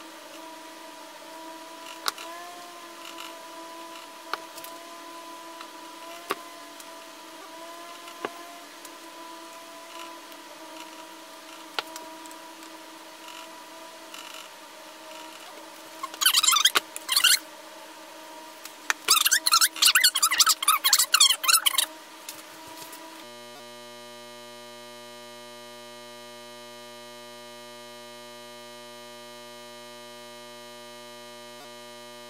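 Scattered light clicks of a spoon against dye jars, then two spells of rapid, loud tapping and scraping as dye powder is knocked and scraped out of a jar, over a faint steady hum. Background music takes over about two-thirds of the way in.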